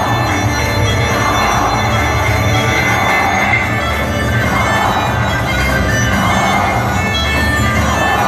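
Loud folk music for a Black Sea horon dance, with sustained reedy melody tones over a steady pulsing beat.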